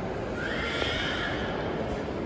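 Steady hubbub of a busy indoor mall, with a high-pitched squeal lasting about a second and a half, starting about half a second in.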